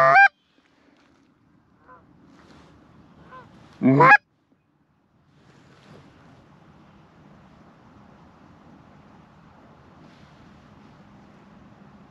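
Handheld goose call blown by a hunter: loud honks right at the start and again about four seconds in, with a couple of fainter calls between. A faint steady rushing noise follows through the second half.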